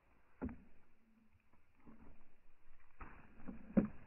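Slowed-down, muffled slow-motion audio of footsteps on dry dirt: faint low rumble with a few dull thumps, one about half a second in and a louder one near the end.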